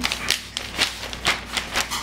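A baby's hands slapping and smearing wet finger paint on a sheet of paper, with the paper rustling. The sound is an irregular run of soft pats and rubs, several a second.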